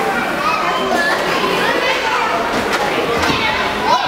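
Many young children playing, their voices overlapping in a steady din of shouts and chatter.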